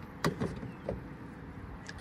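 Tesla Supercharger charging connector being hung back in its holster on the charging post: one sharp click about a quarter second in, followed by a few fainter knocks as the handle and cable settle.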